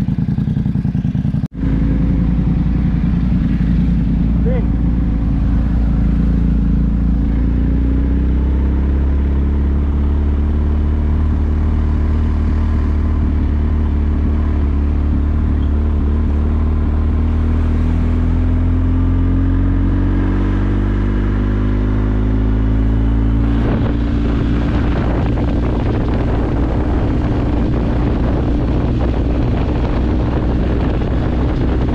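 Motorcycle engine running while riding, its pitch rising slowly as the bike gathers speed, with a brief dropout about a second and a half in. Wind noise on the microphone joins in during the last few seconds.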